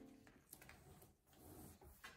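Near silence, with a few faint, brief soft noises.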